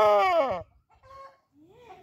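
A 6–7-month-old broiler rooster crowing: the crow's long final note slides down in pitch and cuts off about half a second in. Two faint short sounds follow near the end.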